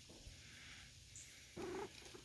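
Domestic tom cat purring softly and steadily while being stroked on the head, with one short, louder sound near the end.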